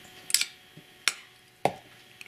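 Three sharp clicks of a fountain pen being handled, the first one doubled, as its cap is pushed on and the pen is laid down on a paper notebook.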